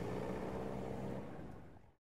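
A vehicle engine running with a steady hum, fading away near the end.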